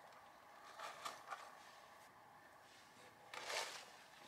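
Sheets of printed paper rustling as they are handled: faint brushes about a second in, then a short, louder swish of paper near the end.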